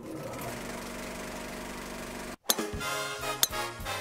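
Film projector running, a steady mechanical whir and clatter that cuts off about two and a half seconds in. Music then starts, with two sharp cracks soon after.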